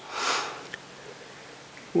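A man's audible in-breath close to the microphone during the first half-second or so, followed by a faint click and quiet room tone.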